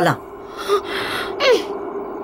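A person's breathy gasp just under a second in, then a short falling vocal sound, over a faint steady hum.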